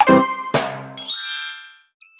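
Short intro music jingle: a pitched note, then a bright chime about half a second in that rings out and fades away.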